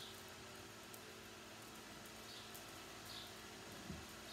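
Faint, short high-pitched chirps of small birds, a few of them, mostly in the second half, over a low steady hum of a quiet indoor arena.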